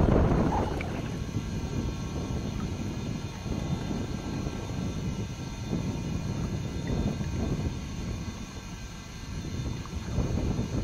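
Wind buffeting an outdoor camcorder microphone: an uneven low rumble, a little louder at the start and easing off toward the end.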